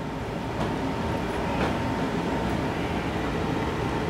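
Steady background noise with a faint constant hum and no distinct events apart from a couple of faint ticks.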